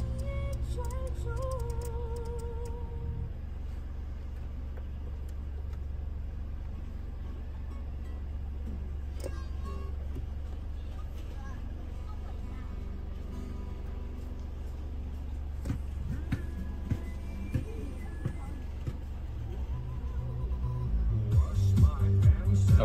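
Music playing quietly over the car's speakers, heard mostly as a steady bass hum. Near the end louder music comes in as the Android screen's audio starts coming through the car's AUX input.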